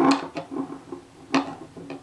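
A few light metallic clicks and knocks as an adjustable wrench gripping a small metal laser module housing is handled and turned, with one sharp click a little past halfway.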